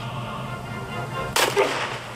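A single gunshot sound effect about a second and a half in: one sharp crack with a short ringing tail, over a faint steady hum.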